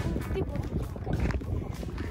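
Wind buffeting the microphone in an uneven low rumble, with children's voices over it.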